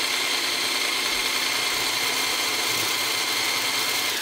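Electric hand blender (Faberlic Home) running steadily with its wire whisk attachment, beating eggs in a plastic beaker: an even motor whine with the whisk churning the liquid as it starts to foam.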